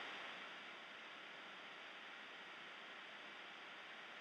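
Near silence: a faint, steady hiss of room tone or recording noise.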